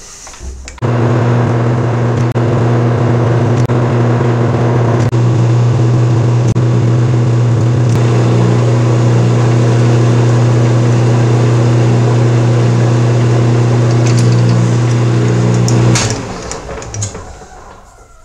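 Small metal lathe's electric motor and drive starting abruptly about a second in and running at its slowest speed with a loud, steady hum during a thread-cutting pass with a carbide insert, then winding down near the end as it is switched off.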